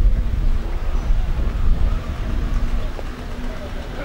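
A steady low rumble with indistinct voices of people nearby.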